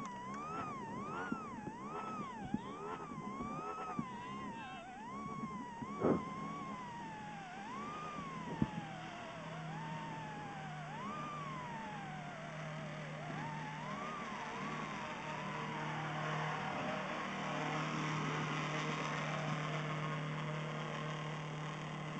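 A siren wailing, its pitch swinging rapidly up and down at first and then in slower, wider glides. From about nine seconds in, a low steady engine hum runs underneath, with a couple of short knocks.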